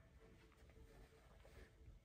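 Near silence: studio room tone with a faint steady hum.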